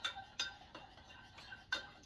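A spoon stirring in a small bowl, with about three separate clinks against its side, at the start, just under half a second in and near the end.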